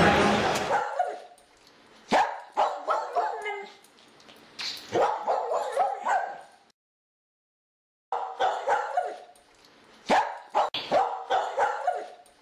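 Dog barking and yipping in runs of quick short barks, with a silent gap of about a second and a half midway. Hall noise from the crowd dies away within the first second.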